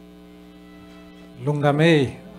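Steady electrical mains hum from the church sound system and amplifier, then a loud man's voice over the microphone cuts in over it near the end.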